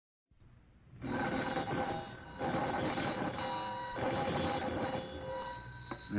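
Party-line telephone bell ringing on an old-time radio broadcast, in three long rings with a rattling texture over a hissy, worn recording.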